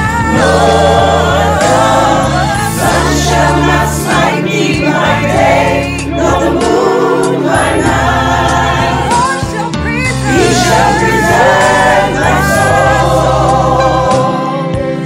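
Gospel choir and a female lead singer, singing over a steady low instrumental accompaniment.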